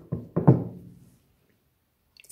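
A large stone set down and shifted on a tabletop: three or four knocks in the first half-second, the loudest about half a second in, with a short low ringing from the table after each.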